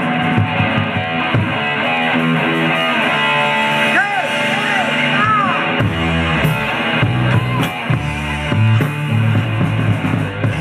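Electric guitar playing a blues-rock riff with bent notes, live. A low bass part comes in about six seconds in.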